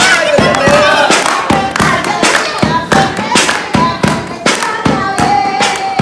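A group clapping hands in a steady beat, about three claps a second, with women's voices singing over it: the clapping and singing of a Punjabi gidda.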